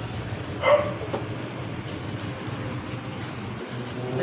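A single short dog bark less than a second in, over a steady low engine hum.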